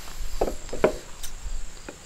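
A few short light knocks and rustles as a sheet of stiff scrap leather and heavy shears are handled on a wooden bench, the loudest a little under a second in. A steady high insect trill runs behind.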